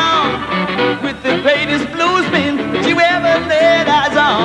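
Live blues band playing an instrumental passage, led by a harmonica wailing with bent, wavering notes over the band's accompaniment.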